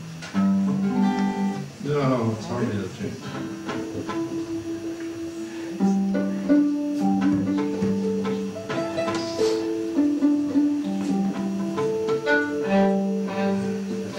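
String instruments being tuned and tried out between songs: long held notes at changing pitches, with a few quick strums early on.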